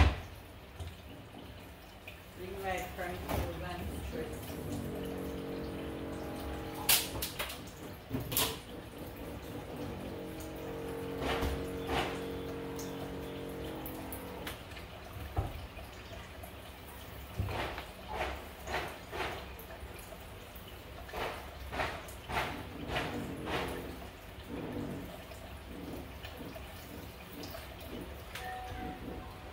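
Kitchen tap running a thin stream of water into a mixing bowl in a sink of dishes, with scattered sharp clicks and knocks.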